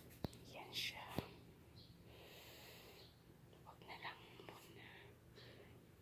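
A man whispering quietly, with two faint clicks in the first second or so.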